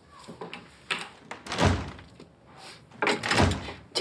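Wooden door being closed: a few light knocks, then two heavy thuds, about a second and a half apart.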